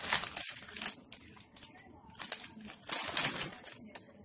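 Plastic cookie packaging crinkling in several short bursts as it is handled.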